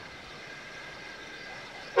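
Quiet soundtrack background: a faint steady hiss with a few faint held tones. A loud, steady whistle-like tone starts right at the very end.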